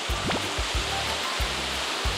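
Steady rushing of water spilling down a small rocky waterfall into a pond, under background music with a low, regular bass beat.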